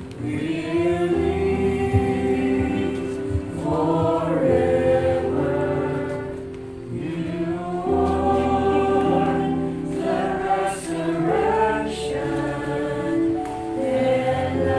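A group of voices singing a slow hymn in long held notes over a sustained instrumental accompaniment.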